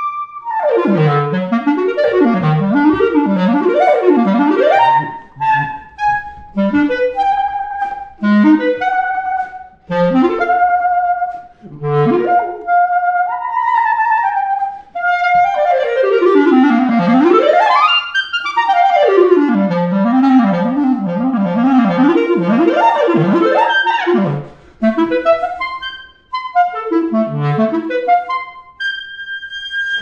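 Solo clarinet playing an improvised cadenza: fast arpeggios sweeping up and down from the low register, broken by short pauses and held notes, ending on a long high note as the cadenza closes.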